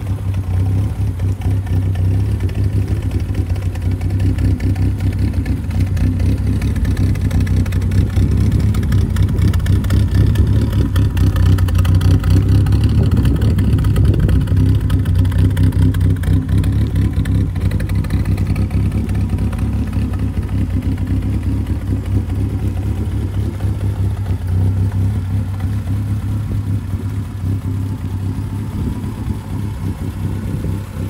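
1968 BMW 1600's 1.6-litre four-cylinder engine idling steadily, a little louder around the middle as the microphone passes behind the car near the tailpipe.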